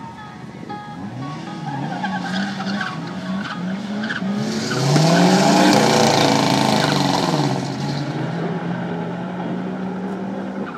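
Drag-racing cars, the Mk1 Ford Escort Cosworth among them, revving repeatedly on the start line, then launching at full throttle about four and a half seconds in. The engines rise in pitch under a loud rush of tyre and engine noise for about three seconds, then ease to a steadier engine note near the end.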